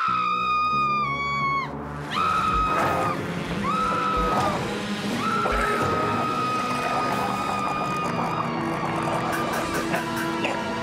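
High-pitched screaming over music. A long scream falls away after about two seconds, then come two short shrieks and a long held shriek from about five seconds in.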